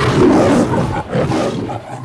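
The MGM lion's roar from the studio logo: two roars, the first the louder, the second fading toward the end.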